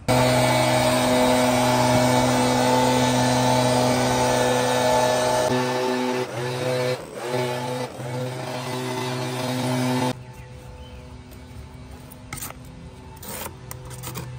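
Backpack leaf blower's two-stroke engine running at high throttle with a steady drone and rush of air. From about halfway its speed dips and surges a few times, then it drops away sharply about ten seconds in.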